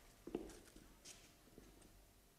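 A few faint footsteps on a hard floor, the clearest about a third of a second in, otherwise near silence.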